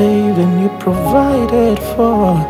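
Slow worship music: a man's voice sings a gliding, drawn-out melody over sustained keyboard pad chords.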